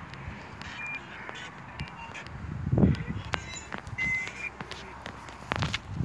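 Footsteps on a pavement, mixed with scattered clicks and knocks of handling, and a short, louder low rumble about three seconds in.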